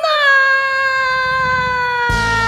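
A woman's voice holding one long, unaccompanied sung note, its pitch sinking slowly throughout.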